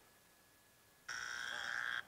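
Game-show wrong-answer buzzer sound effect: a single steady electronic buzz of about a second, starting about a second in and cutting off abruptly, marking the answer just given as wrong.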